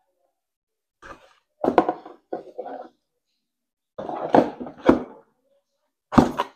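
Parts being handled and knocked against a hard surface, with sharp clunks about two seconds in and twice more past the four-second mark.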